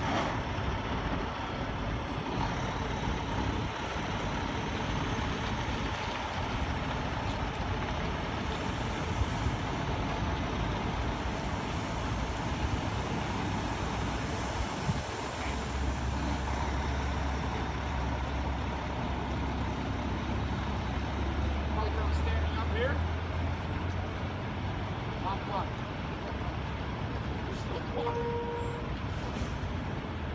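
Heavy-haul diesel truck pulling a long oversize trailer slowly past, with a steady engine rumble that grows deep and strong about halfway through, over street traffic noise and tyres on wet pavement.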